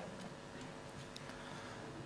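Faint room tone of a hall over a microphone: a low steady hiss and hum, with a few faint ticks.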